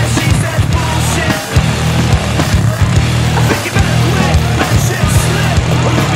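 Loud music laid over the footage, with a heavy bass line and a steady drum beat.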